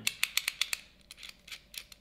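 A RØDE smartphone holder clamp being handled and worked open: a quick run of small sharp clicks in the first second as its two halves are pulled apart, then a few scattered clicks.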